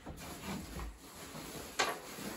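Faint rustling and handling noise as a quilted sleeping bag is picked up, with one sharp click near the end.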